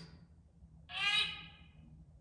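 Necrophonic ghost-box app playing through a phone speaker: short chopped bursts of garbled sound, a brief blip at the start, then a louder pitched, voice-like sound of just under a second that falls slightly, about a second in.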